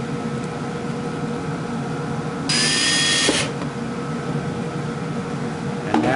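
Cordless drill-driver run once for about a second, driving a screw into an MDF panel: its motor whine rises quickly, then holds steady until it stops.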